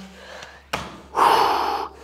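A short knock about two thirds of a second in, then a woman's loud, breathy exhale lasting under a second: the breath let out at the end of a set of planks.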